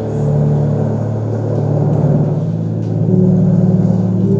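Relaxing ambient music of sustained low drone chords over the sound of ocean waves, played over the room's speakers. The held chord shifts about three seconds in.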